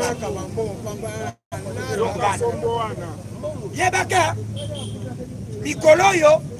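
A man's voice speaking to a gathered crowd, with other voices chattering around, in a language the transcript does not catch. The sound cuts out completely for a moment about a second and a half in, and a steady low hum sits underneath.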